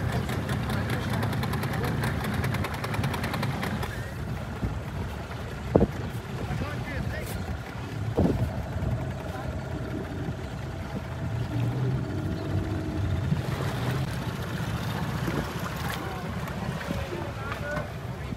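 Boat motor running steadily with wind on the microphone and a wash of water. Two sharp knocks come about six and eight seconds in.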